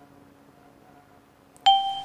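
Quiet room tone, then a sudden bright bell-like ding that starts near the end and rings on steadily.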